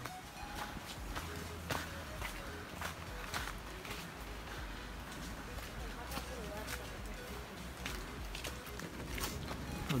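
Footsteps of a hiker walking through leaf litter on a trail, an irregular run of soft crunches and scuffs.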